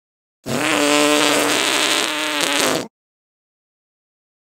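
A single long fart, pitched with a buzzing tone, lasting about two and a half seconds and cutting off suddenly.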